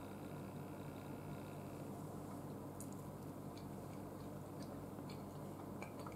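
Faint chewing of a bite of cheesecake, with a few small mouth clicks, over a low steady room hum.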